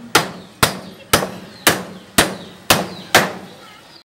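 Steel hammer striking a joint in a wooden branch frame: seven sharp blows at a steady pace of about two a second, each ringing briefly. The sound cuts off suddenly at the very end.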